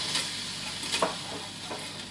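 Meat frying in a pan with a steady sizzle, and a utensil clicking against the pan twice as it is stirred; the sharper knock comes about a second in.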